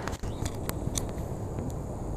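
Low, steady outdoor rumble, typical of wind on the microphone, with a few light clicks from the handheld camera being handled.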